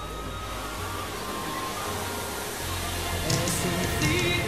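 Music swelling steadily over the even rushing hiss of the Magic Fountain of Montjuïc's water jets, with more instruments entering near the end.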